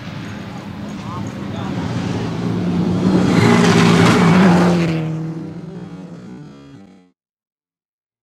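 Rally car at speed on a gravel stage, its engine held at high revs with the rush of tyres on dirt. The sound builds to its loudest about halfway through, fades as the car pulls away, and cuts out abruptly about seven seconds in.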